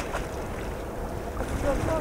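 Wind rumbling on the microphone over water noise out on a pond, with voices in the background; someone calls "go, go" near the end.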